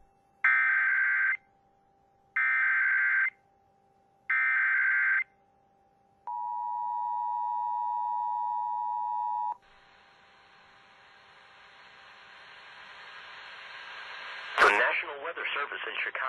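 Emergency Alert System activation. Three one-second bursts of SAME header data tones come first, then the two-tone attention signal holds steady for about three seconds and cuts off. A hiss then grows louder until a synthesized voice starts reading the alert, a severe thunderstorm warning, near the end.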